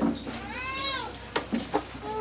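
A single high-pitched call that rises and falls, then two sharp knocks from a handheld microphone being handled as it is passed on.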